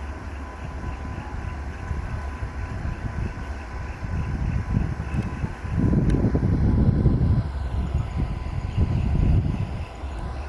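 EMD GT18LA-2 diesel-electric locomotive approaching at the head of a passenger train: a low engine and rail rumble that grows louder about six seconds in.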